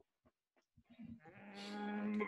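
A brief pause, then about a second in a man's voice held out in one long, steady note that grows louder and runs straight into speech.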